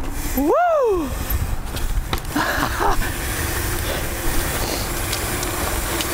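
Bicycle tyres rolling on a concrete sidewalk, with a steady rushing noise and occasional light clicks. About half a second in, a short tone rises and then falls in pitch.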